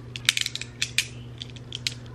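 Strong rainbow-coated ('oil slick') magnetic balls clicking and snapping against each other as a clump of them is handled. There is a quick run of sharp clicks about a quarter second in, a few more around one second, and a single one near the end.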